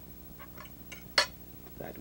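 A drinking glass handled on a tabletop: a few faint clicks, then one sharp clink of glass about a second in.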